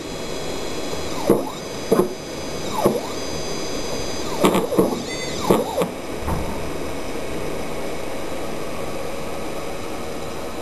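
Stepper motors driven in short moves, each a brief whine that rises and falls in pitch, several times over the first six seconds. After that only a steady background hum remains.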